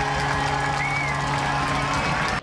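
A steady chord held through the ballpark sound system over a crowd cheering, the home-team celebration of a home run. A short high rising-and-falling note comes about a second in.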